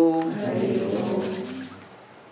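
Hands rubbing palm against palm, a dry back-and-forth swishing, under the tail of a man's held chanted tone that fades out near the end.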